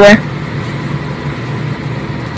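A steady low background hum with no distinct events, following the tail of a spoken word at the very start.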